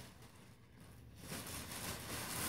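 Faint rustling of a clear plastic packaging bag being handled, starting about a second in.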